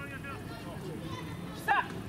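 Faint voices of players calling across an open field, then one short, loud shout near the end.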